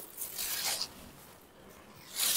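Banarasi satin crepe silk saree cloth rustling as it is lifted and spread out by hand. The rustle comes in the first second, then fades to faint.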